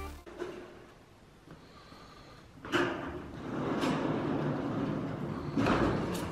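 A horse being led out of its stall on a barn floor: a sharp knock about halfway through, then shuffling and scuffing with a few scattered hoof knocks.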